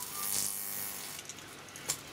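High-voltage arc buzzing and crackling at the metal tip of a neon mains-tester screwdriver, fed 10 kV from a 30 mA neon sign transformer, with a steady mains buzz under it and a sharp crack near the end. The arc is melting the end of the tester off.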